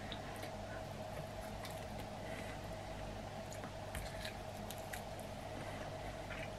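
Faint wet squishing and small scattered clicks of a sauce-coated chicken wing being chewed and pulled apart by hand, over a steady faint hum.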